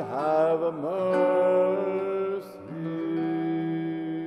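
A male cantor sings a slow, chant-like phrase to acoustic guitar accompaniment. His voice glides through the first second, then holds long notes, with a short break about two and a half seconds in before the last held note.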